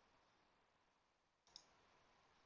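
Near silence, broken about one and a half seconds in by a single soft click of computer input as a spreadsheet formula is entered.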